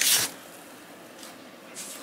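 Cardboard rubbing and scraping as a shipping box's lid is lifted open: a short burst of rustling at the start, then fainter rustles about a second in and near the end.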